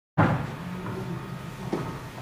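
A sudden thump as the sound cuts in, then a second, shorter knock about a second and a half later, over low room noise with a faint hum.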